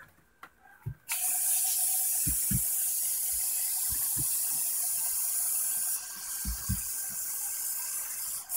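Aerosol insecticide spray can hissing in one long continuous burst that starts about a second in and eases a little about six seconds in, with a few low handling thumps.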